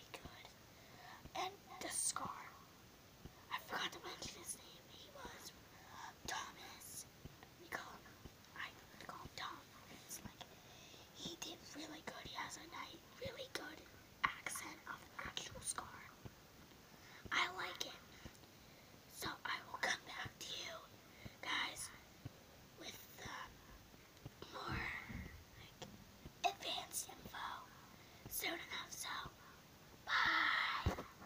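A child whispering to the camera in short, indistinct phrases.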